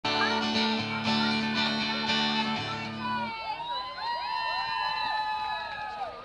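Acoustic guitar strummed live in chords with a steady bass line; the chords stop suddenly about three seconds in, leaving several long, wavering held tones.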